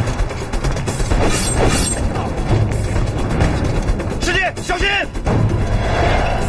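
Dramatic film score under a staged hand-to-hand fight, with repeated hard hit and blow sound effects. A man shouts for about a second, around four seconds in.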